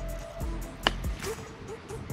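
Golf club striking the ball: a single sharp click a little under a second in, over a steady low background.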